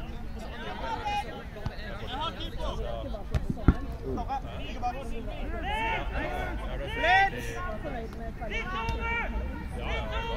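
Players' voices calling and shouting across an outdoor quadball pitch, short overlapping calls throughout with a loud shout about seven seconds in. A single sharp knock sounds about three and a half seconds in, over a steady low rumble.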